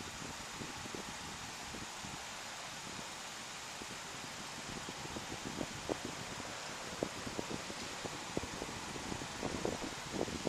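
Steady hiss of an outdoor city street at night, with faint small clicks and rustles over the last few seconds.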